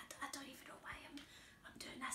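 A woman whispering softly, close up to a microphone, in ASMR style.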